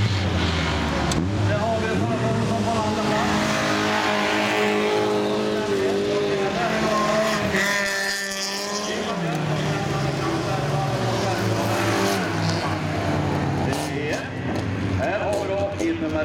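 Folkrace car engines racing, several at once, their pitch repeatedly rising and falling as the cars accelerate, shift and lift off for corners.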